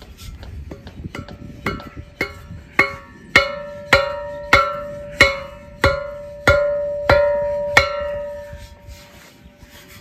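Hollow steel post driver (a 'bonker') knocking a wooden tree stake into soft ground. There are about thirteen strikes, a little under two a second, growing louder after the first few. Each strike leaves the tube ringing, and the ring fades out over about a second after the last knock.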